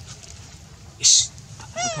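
A brief loud hissing burst about halfway through, then a short high squealing macaque call that rises and falls in pitch near the end.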